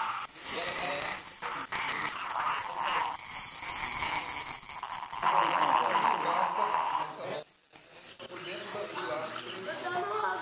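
Indistinct voices of several people talking, with no clear words, broken by a brief near-silent gap about three-quarters of the way through.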